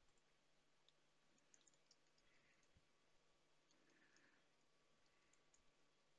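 Near silence, with faint scattered clicks of typing on a computer keyboard.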